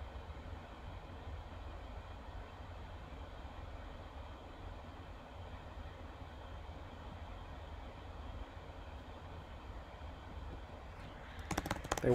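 Faint steady room hum; about a second before the end, a short run of computer keyboard keystrokes.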